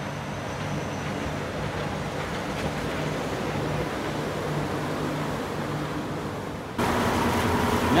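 Walt Disney World monorail train running past overhead on its beam: a steady electric hum and rolling noise. Near the end it cuts off suddenly into the louder, steady engine and wind noise of a boat on open water.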